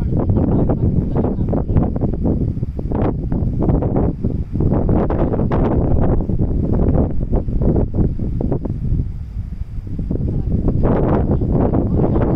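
Wind buffeting the microphone: a loud, gusting low rumble that eases briefly near the end before picking up again.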